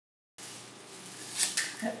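Fresh curly kale leaves being torn by hand, two crisp ripping rustles about two-thirds of the way through.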